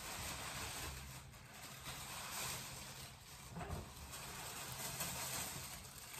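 Tissue paper rustling steadily as it is pulled out of a gift bag.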